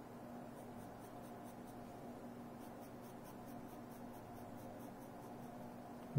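Faint scratching of a graphite pencil on sketch-pad paper, a run of short repeated strokes as a small curve is drawn, over a steady low room hum.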